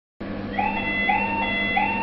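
Electronic warning alarm sounding a repeated rising whoop, about one every two-thirds of a second, over a steady low hum.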